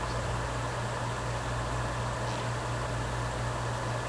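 Steady low hum with an even hiss underneath: the background noise of a meeting room and its recording chain during a pause in talk.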